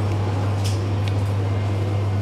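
A steady low mechanical hum over a constant background hiss, with two faint ticks about a second in.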